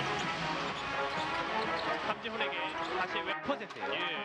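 Basketball bouncing on a hardwood court during live game play, with several sharp bounces in the second half, over background music and a voice.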